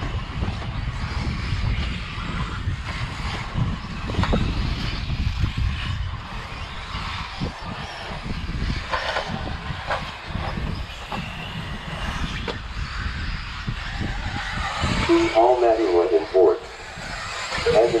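Electric 1/10-scale RC buggies running on a dirt track under a steady low rumble, with a few light clicks. An announcer's voice comes in briefly near the end.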